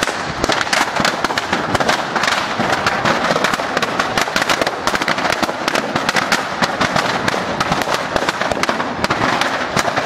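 Firecrackers packed in a burning New Year's effigy going off in a dense, continuous crackle, many sharp pops every second without a break.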